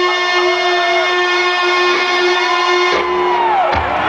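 Loud live rock music from the stage: one sustained, distorted electric-guitar note rings with many overtones for about three seconds. It then breaks into sliding, bending pitches, with a low thump near the end.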